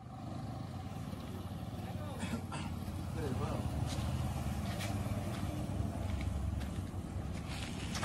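Street ambience: a steady low rumble of motor traffic, with faint voices in the distance.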